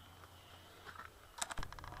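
A quick run of sharp clicks about a second and a half in, followed by the low, steady rumble of a vehicle engine heard from inside the cab.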